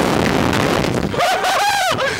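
Wind rushing over the microphone as the slingshot ride flies, then a rider's high, wavering scream about a second in, lasting under a second.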